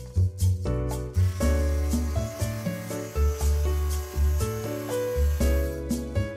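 Background music with a steady bass beat. From about a second in until near the end, a hissing, rasping noise runs under the music.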